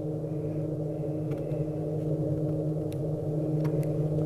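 A steady low hum of several held tones runs throughout. A few faint sharp clicks of scissors snip through crinoline mesh laid on a fish reproduction.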